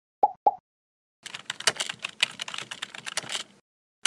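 Two short pops in quick succession, then a rapid run of computer-keyboard typing clicks lasting about two and a half seconds: animated outro sound effects.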